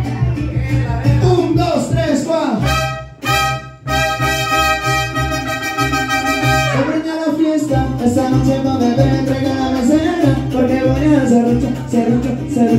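Live mariachi band playing, with trumpets and guitars. About three seconds in the music briefly drops away, then a long held note sounds for two to three seconds before the rhythmic accompaniment starts again.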